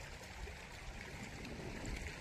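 Irrigation water flowing steadily along an earthen furrow between crop rows.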